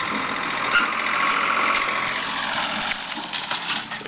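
Compact tractor engine running steadily as the tractor drives across rough ground with its front-end loader, with a few small clicks and rattles.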